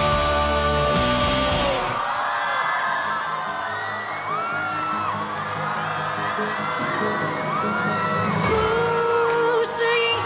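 Live rock band playing: a loud held chord rings out for about two seconds, then the band drops back while the audience screams and whoops in short rising-and-falling calls. A held, wavering note comes in near the end.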